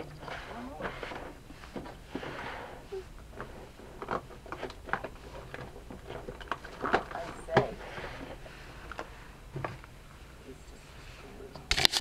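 A woman's laughter trailing off, then scattered light taps and clicks from handling things on a work table, with one loud knock just before the end.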